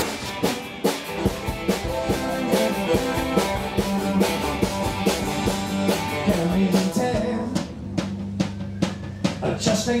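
Live rock band playing an instrumental passage with electric guitar, keyboards and a steady drum-kit beat. The playing thins out in the last few seconds before the vocal comes in.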